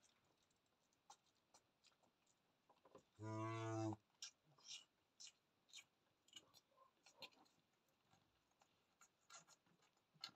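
A cow gives one short, low moo about three seconds in. Around it come faint scattered clicks and rustles while the newborn calf suckles at the udder.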